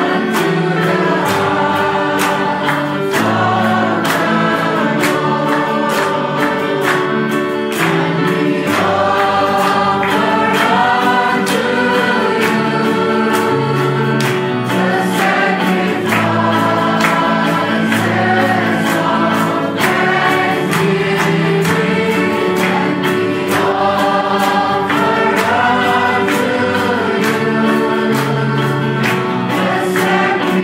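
Choir singing Christian gospel music in harmony with accompaniment, held notes over a steady beat.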